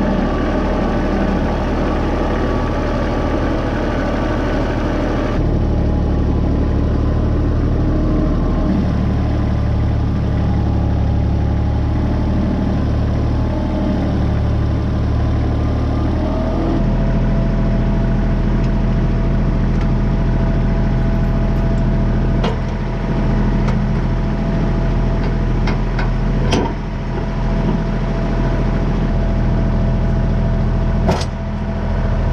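Kubota compact tractor's diesel engine running steadily, its note shifting abruptly a few times. A few sharp clicks or knocks in the latter part.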